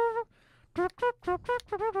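Trumpet solo: a held note ends about a quarter second in, then after a brief breath comes a quick run of short notes, the last few slurred together.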